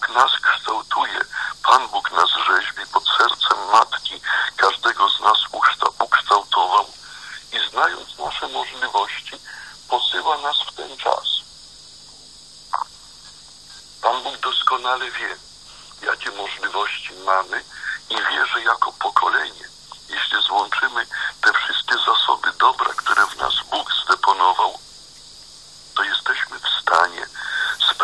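Only speech: a voice talking with a few short pauses, with the thin, narrow-band sound of a radio broadcast or phone line.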